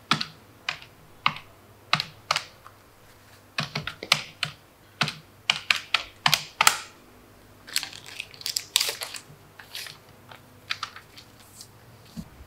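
Key presses on a handheld electronic sales-tax receipt machine: a run of short, sharp, irregular clicks. They come singly at first and then in quicker clusters through the middle.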